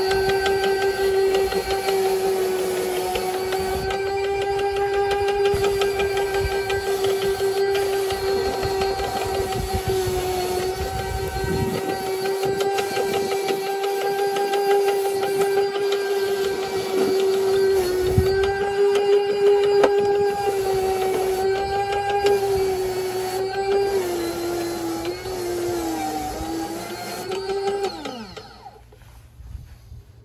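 Electric motor of a powered rotary boot-brush cleaner running with a steady whine while a boot sole is scrubbed against the spinning bristle brush. The pitch sags slightly, then near the end falls away as the motor winds down and stops.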